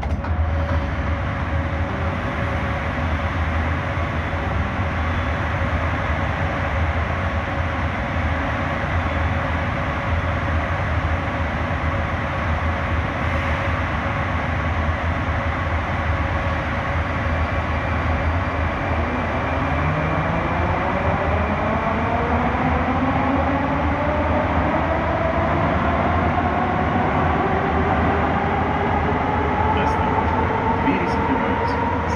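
Moscow Metro train running between stations, heard from inside the car: a steady rumble and hum. In the second half, a whine rises steadily in pitch as the train's traction motors speed up.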